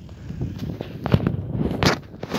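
Footsteps on dry, loose field soil: three or four short steps about two-thirds of a second apart, over a steady low rumble.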